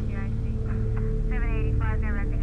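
A low, steady droning hum, several tones held at once, with short fragments of a voice over it in the second half.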